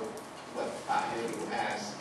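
A person speaking in a seminar room; the speech is not transcribed.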